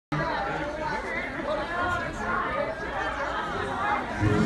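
Audience chatter: many overlapping voices talking at once in a large hall.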